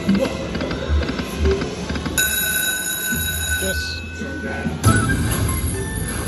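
Aristocrat Dragon Link slot machine's electronic game sounds as the reels spin: a steady high ringing tone held for a couple of seconds as the reels stop, then a sudden louder burst of music about five seconds in as the free-games bonus (six free games) is triggered.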